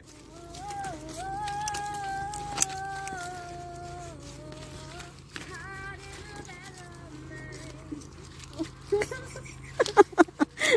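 A voice humming or singing a slow tune of long, held notes that glide from one pitch to the next, over a steady low drone. A single sharp click comes about two and a half seconds in.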